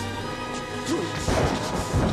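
Film soundtrack of orchestral score with a run of heavy crashes and bangs layered over it. The loudest crashes come in the second half.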